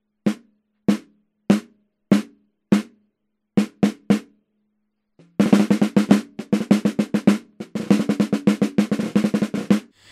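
Snare drum recorded dry through an Akai ADM 40 dynamic microphone placed at the rim about 2 cm above the head and aimed at its center. It plays five evenly spaced single hits, then three quicker ones, and after a short pause fast rolls and rapid strokes through the second half. The hits are short and tight because a dampening ring sits on the snare head.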